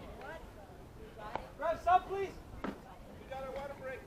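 Voices calling out on a soccer field, with a loud call near the middle, and two sharp knocks about a second apart.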